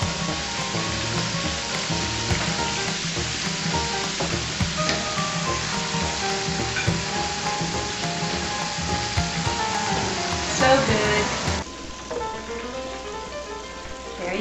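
Food sizzling as it deep-fries in hot oil, a steady hiss with background music playing over it. The sizzle cuts off suddenly near the end, leaving only the music.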